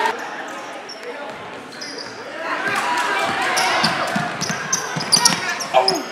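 Live gym sound of a basketball game: a ball bouncing on the hardwood, sneakers squeaking and a crowd's voices in a large hall. The crowd chatter grows about halfway through, and the short high squeaks come thickest near the end.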